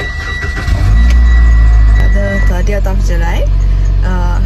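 A car's engine starts about a second in and runs with a steady low rumble heard inside the cabin, under a high steady chime tone that stops halfway through. A song with singing comes on over it soon after.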